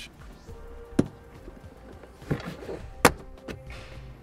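Plastic trim clips snapping loose as a car's interior quarter trim panel is pulled outward: two sharp snaps, about a second in and about three seconds in, the second the louder, with softer plastic rustling between them.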